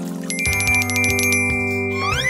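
A bell-like sound effect: a rapid, even trill of high ringing strokes, about ten a second, starting about half a second in over background music. It marks a character magically melting away.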